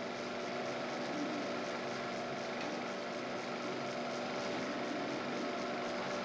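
Philips DP70 70mm cinema projector running: a steady mechanical whirr with a constant electrical hum.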